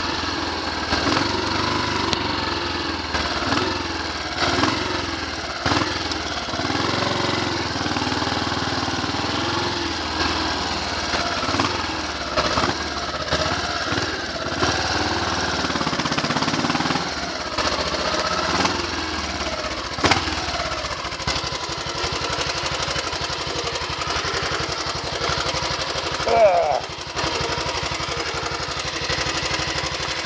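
Royal Enfield motorcycle engine running on the road, its speed rising and falling, then settling to an even, steady idle a little over halfway through as the bike comes to a stop.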